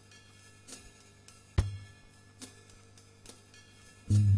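Sparse drum-kit intro to a nu-jazz track: light cymbal taps at a slow, even pulse, with one much louder hit about a second and a half in, over a low steady tone.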